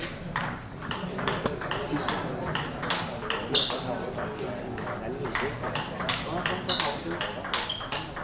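Table tennis ball clicking back and forth in a long rally, alternating between hits off the players' bats and bounces on the table, about two to three sharp clicks a second.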